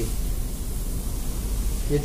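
Steady low hum and hiss of room background noise, with no distinct handling sounds; a man's voice begins right at the end.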